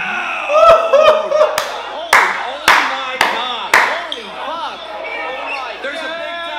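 A run of about seven sharp claps, roughly two a second, starting under a second in and stopping about four seconds in, over excited shouting voices and crowd noise.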